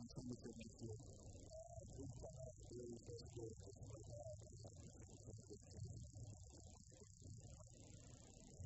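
Faint, muffled voice talking in uneven phrases, with a steady high hiss over it.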